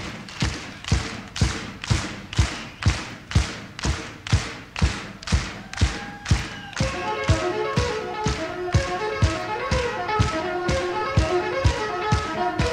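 Live jazz-rock band starting a tune with a steady beat, about two strokes a second, on drums. About seven seconds in, pitched melodic instruments join over the beat.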